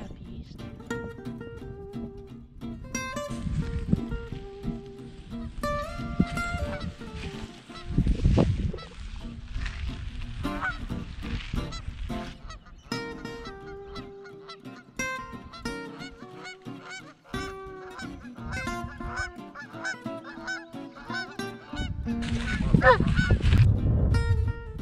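Canada goose honking, with acoustic guitar music running underneath and gusts of wind on the microphone near the end.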